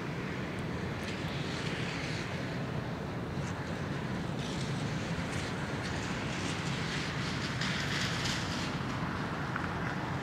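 Steady low rumble of harbour ambience under a hiss of wind, with a few faint crackles.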